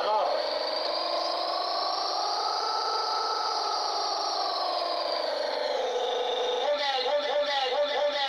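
A man singing unaccompanied, holding one long note that rises slightly and sinks back over about six seconds, then breaking into a quick wavering run near the end.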